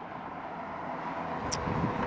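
A vehicle passing on the road, heard as a steady rushing noise that grows slightly louder, with a small tick about halfway through.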